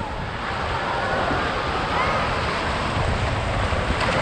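Broken surf washing around in the shallows, with wind buffeting the microphone and faint distant shouts of children.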